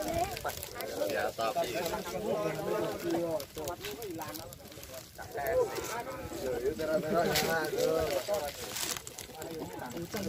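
Overlapping voices of a group of people talking and calling to one another, with a dip about halfway through.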